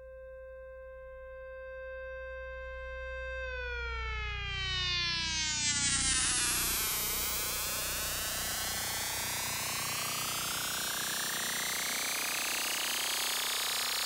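Synthesizer intro of an acid techno track: a steady held tone over a low drone. About three and a half seconds in it starts gliding, its lower tones falling while a bright sweep rises in pitch and the sound grows louder.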